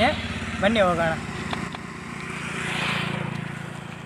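A motor vehicle's engine running, with a hiss that swells to a peak about three seconds in and then fades, as it passes by.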